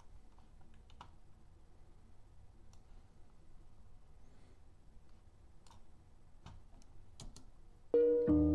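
A few faint, scattered computer mouse clicks over a low steady room hum.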